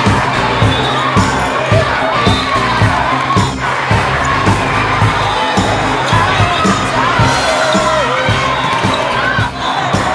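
Many players and spectators shouting and cheering during a volleyball rally in a large hall, with frequent sharp thuds of balls being hit throughout.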